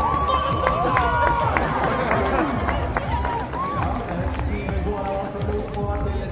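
A large outdoor crowd of spectators talking all around, with music playing over loudspeakers and a steady low rumble underneath.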